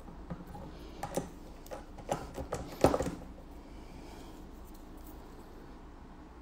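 A handful of light clicks and taps from handling small manicure tools, bunched in the first three seconds with the loudest near three seconds in, then only quiet room tone.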